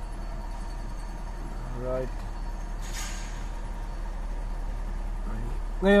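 Mitsubishi Adventure's gasoline engine idling steadily at about 1,100 rpm when warm, with the idle still settling after its mud-clogged idle-speed servo was cleaned. A brief hiss comes about three seconds in.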